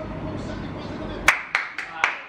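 A man clapping his hands: a quick run of sharp claps, about four a second, starting just over a second in.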